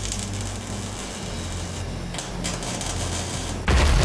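Electric arc welding on a steel frame: a steady hiss over a low hum. Near the end a sudden, much louder low boom cuts in.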